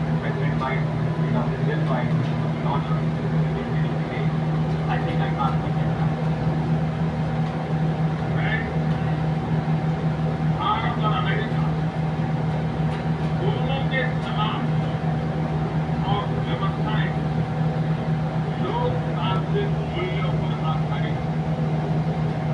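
A steady low hum, with short bursts of voices calling out now and then over it.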